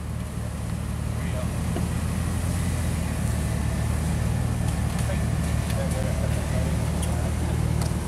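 Jeep Wrangler's engine running low and steady under load as it crawls over a rock ledge, building slightly over the first second or two.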